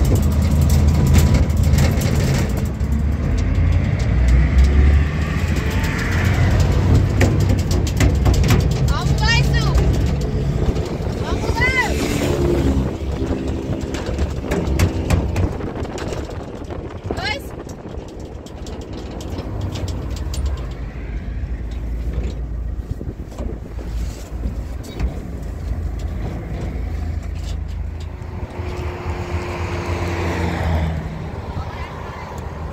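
Pickup truck engine and road rumble, heard from the open cargo bed while driving, easing off somewhat in the second half.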